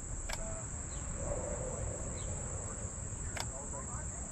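Steady high-pitched insect drone under a low outdoor rumble, with two short sharp clicks, one just after the start and one near the end, as the jump starter clamped to the bus battery is handled.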